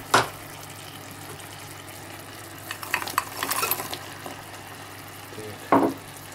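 Vegetables sizzling steadily in a honey syrup in a roasting pot, with a cluster of knocks and clatter about three seconds in as halved Brussels sprouts are tipped into the pot. A single louder knock comes near the end.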